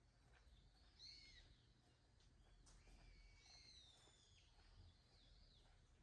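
Faint bird calls in a quiet outdoor setting: a short falling call about a second in, a longer drawn-out call from about three to four and a half seconds, and a few short notes near the end, over a low steady rumble.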